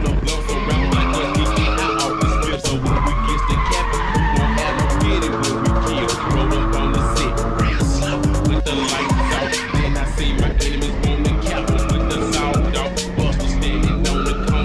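A drift car's engine revving up and down as its tyres squeal and skid through slides, under background music with a steady beat.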